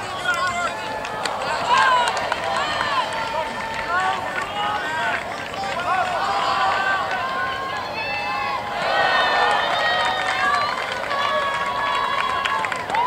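Many voices shouting and calling out over one another across an open playing field, from players and sideline spectators during play. The shouting grows denser and louder about nine seconds in.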